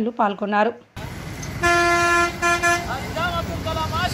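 A vehicle horn honks twice on a busy street, one longer toot and then a shorter one, over traffic noise; voices call out after it.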